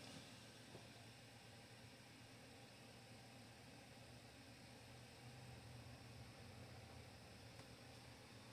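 Near silence: room tone, a faint steady low hum under light hiss.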